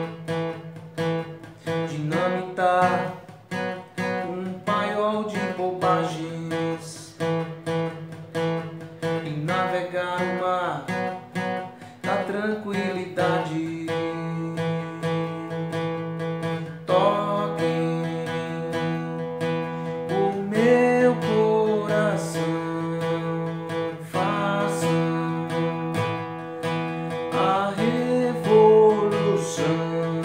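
Steel-string acoustic guitar strummed in a steady rock rhythm, playing two-note power chords on the 4th and 3rd strings, moving between E, A and B.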